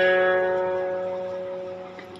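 A plucked-string chord from the song's instrumental backing track rings on and fades steadily away.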